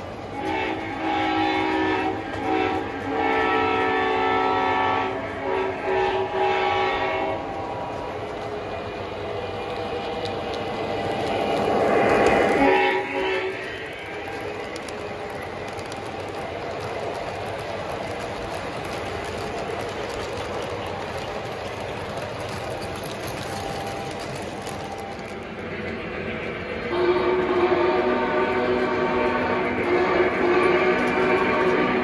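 Lionel O-gauge model trains running: a locomotive's electronic horn sounds in several blasts over the first seven seconds. A train then rumbles past close by, loudest around twelve seconds, its wheels clicking over the track joints. Another long blast starts near the end.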